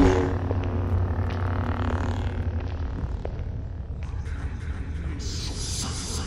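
Low, steady rumbling drone of a film soundtrack's ambience, as a loud music hit fades at the very start. A high hiss comes in about five seconds in.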